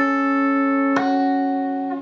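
Guitar plucking two-note shapes on the G and high E strings, one at the start and a second, higher-sounding shape about a second later, each left to ring out.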